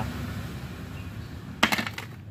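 A quick cluster of sharp metallic clinks near the end, a metal hand tool knocking against the motorcycle engine's oil filter cover bolts, over faint steady background noise.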